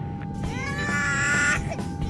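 A high, drawn-out wailing cry that rises at its start and is held for about a second, with a steady background tone underneath.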